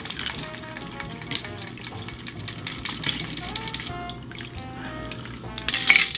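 Shaken cocktail strained from a stainless steel shaker into a pint glass of ice: liquid running and trickling over the ice with scattered light clinks, under quiet background music.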